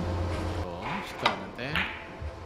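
A single sharp click a little past halfway, typical of ivory-hard billiard balls striking on a three-cushion table, among brief murmuring vocal sounds.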